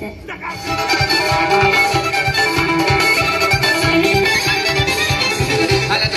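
Music with a steady beat under a sustained melody, played loud over loudspeakers, starting about half a second in.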